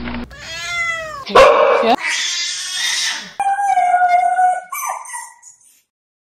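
A cat meowing: a rising-and-falling meow about a second long near the start, a loud outburst, then a longer, steadier cry that fades away before the end.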